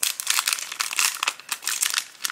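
Thin clear plastic sheet crinkling and crackling as fingers bend and handle it. It is the backing sheet of a set of sticky envelope seals, giving a dense run of fine crackles.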